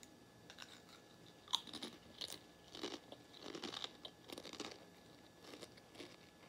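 A child biting and chewing crunchy Doritos tortilla chips close to the microphone, a run of crisp crunches about once a second.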